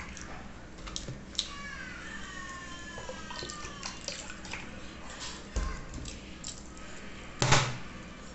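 Wet chewing and lip-smacking from eating gelatinous cow's foot (mocotó) coated in farofa by hand, with scattered sharp mouth clicks and the loudest smack near the end. A faint falling squeak sounds about two seconds in.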